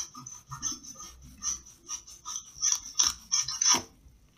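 A thin metal blade sawing through a crisp apple: a run of irregular crunching and rasping, loudest near the end as the apple splits into halves.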